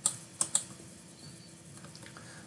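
Computer keyboard keystrokes: a sharp click at the start and two more in quick succession about half a second in.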